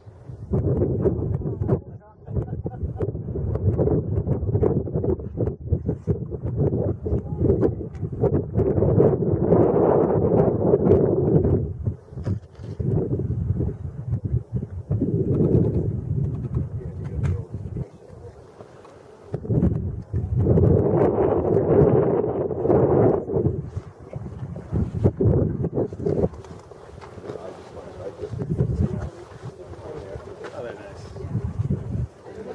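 Wind buffeting the microphone in uneven gusts, a low rumble that swells and drops away, mixed with indistinct chatter of people nearby.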